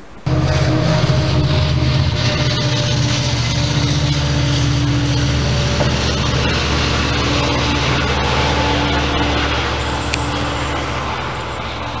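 Passenger train running past with a loud, steady low drone and a higher note over it. The sound starts abruptly and cuts off suddenly near the end.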